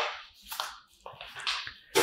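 Handling noise: a paper instruction manual rustling and the plastic trash can lid and bin being moved. It comes as a few short, soft rustles and light taps.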